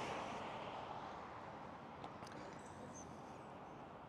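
Faint outdoor background: a soft, even hiss with a small click about two seconds in.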